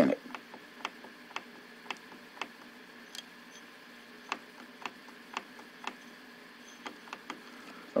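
A loose metal T-ring adapter rocked back and forth in a Nikon camera's bayonet lens mount, clicking lightly about twice a second with a short pause in the middle. The clicks are the adapter knocking against the mount through its play: it has slop in it and does not fit snugly.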